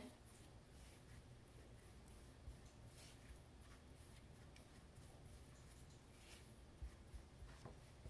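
Faint scraping of a spatula stirring a dry, crumbly mix of coconut flour and melted cream cheese in a small metal bowl, with a few soft ticks against the bowl.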